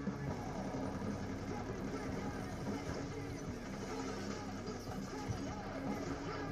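A film soundtrack with a steady, moody music score and faint voices underneath; no loud gunshots stand out.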